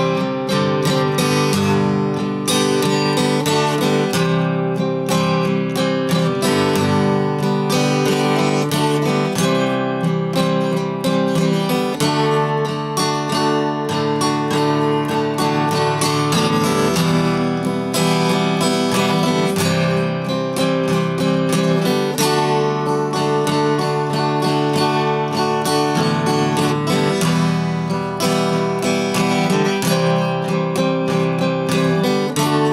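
1960s Harmony H-165 all-mahogany steel-string acoustic guitar, the one with a steel-reinforced neck and no truss rod, played solo: a continuous run of chords that change every second or two.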